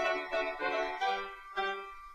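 Background music: a melody of separate pitched notes, a new note roughly every half second.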